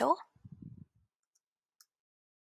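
The last of a spoken word, then near silence broken by a single faint click near the end: a computer keyboard key being pressed as a title is typed.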